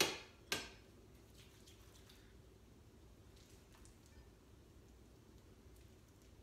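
Two sharp clanks of a metal baking tray about half a second apart, each ringing briefly, as it is moved on the counter. Then only faint small ticks and rustles from hands shaping sticky candy.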